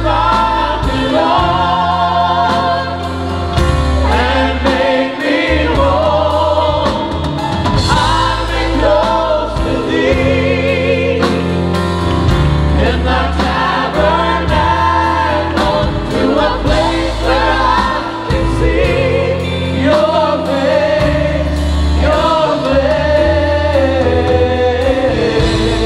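A worship vocal group sings together in held, wavering notes, backed by a live band of drums, electric guitars, bass guitar and keyboard.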